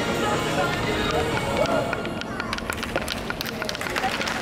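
People's voices over the tail of the routine's music, then a quick irregular run of sharp clicks through the second half.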